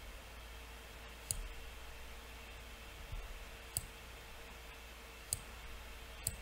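Computer mouse clicks: three short, sharp clicks a second or two apart, over a faint steady hum.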